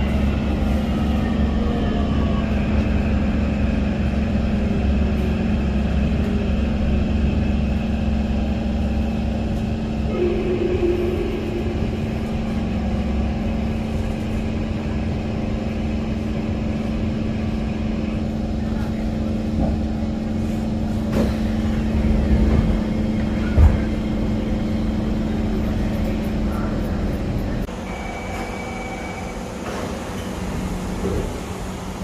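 Kawasaki Heavy Industries C151 train braking into a station, its traction motor whine falling in pitch over the first ten seconds or so. It then stands with a steady low hum, broken by a sharp knock about three-quarters of the way through.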